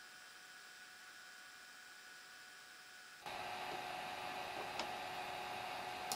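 Near silence for about three seconds, then a steady hiss with a faint electrical hum comes in and holds: microphone background noise with mains hum.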